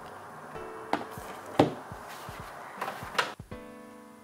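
Quiet background music, with a few short knocks and taps as a hardcover book is handled and laid flat on a table; the loudest knock comes about one and a half seconds in.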